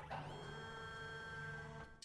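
A steady hum made of many held tones from the animation's soundtrack: a sustained chord or machine-like drone that starts suddenly and cuts off suddenly after about two seconds.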